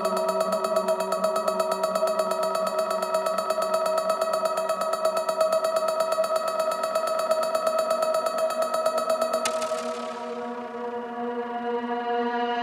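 Electronic dance-music breakdown: a sustained synthesizer chord with a fast, even pulsing and no kick drum or bass. About nine and a half seconds in, the treble cuts off suddenly and the sound thins and drops in level.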